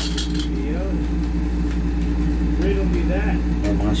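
A steady low hum under faint voices, with a few light clicks near the start and near the end as the plastic rocker frame is handled.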